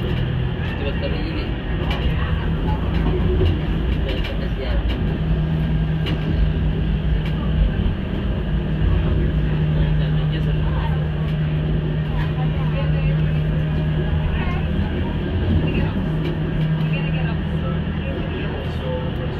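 Tram running noise heard from inside the car: a steady rumble with rattles and a low hum, with indistinct voices throughout.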